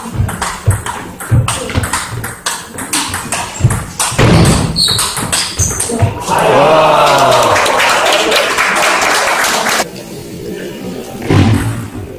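Table tennis rally: the celluloid ball clicks off rackets and table in quick succession. About six seconds in, a loud burst of sound with voices in it takes over for about three and a half seconds, starting and stopping abruptly.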